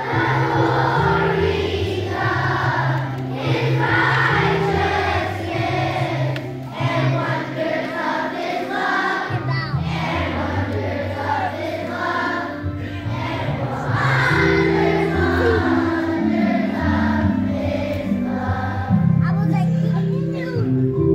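A large children's choir singing over an instrumental accompaniment whose low notes are held and change in steps.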